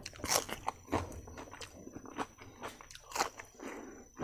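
A person chewing close to the microphone, with irregular crisp crunches from biting raw green chili and onion with a mouthful of rice. The sharpest crunches come about a third of a second in, at one second and just after three seconds.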